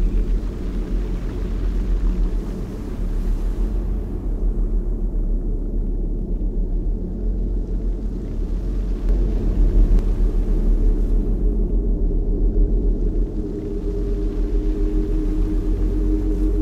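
A deep, steady rumble with no clear pitch. Near the end a low drone of a few held tones comes in over it.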